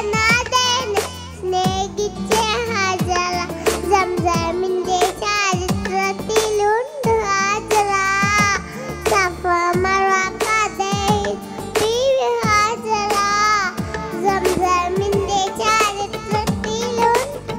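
A young girl singing a Mappila song into a headset microphone, her melody wavering with ornaments, over accompanying music with percussion.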